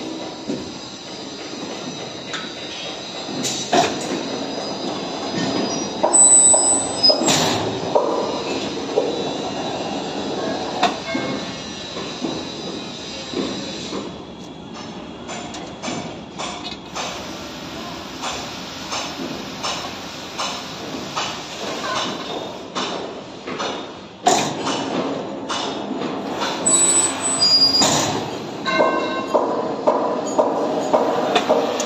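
Electric rebar bending machine running while a bundle of steel TMT bars is bent: a steady mechanical whir with brief high metal squeals and several sharp clanks of steel bars.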